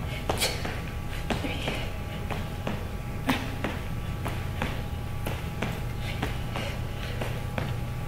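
Feet landing on a wooden floor during jumping jacks with a dumbbell overhead press: short thuds that come roughly in pairs about once a second. A steady low hum runs underneath.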